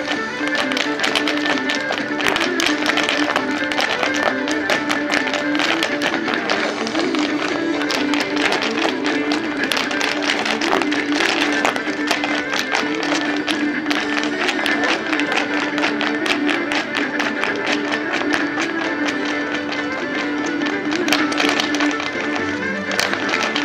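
Lively Irish dance music with a steady held tone, over the rapid, rhythmic tapping of a group of Irish step dancers' shoes striking pavement.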